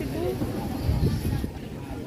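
Voices of passersby talking, over a low rumble that swells about a second in.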